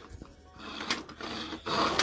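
Plastic base of a Pink Panther figure toy being pressed and worked by hand: rubbing and rattling of plastic with a sharp click about a second in. The toy's action no longer works with age.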